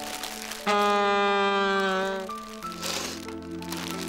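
A woman blows her nose into a handkerchief, a loud comic honk lasting about a second and a half, over soft sustained background music.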